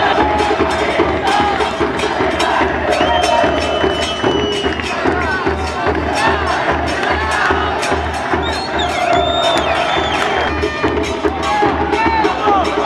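Football supporters in the stands chanting and cheering over a steady, repeating drum beat.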